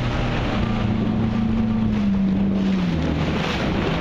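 Water jetpack's pump unit, a jet-ski-type engine, running with a steady drone; its tone drops in pitch from about two to three seconds in as the revs ease off. Wind rumbles on the microphone underneath.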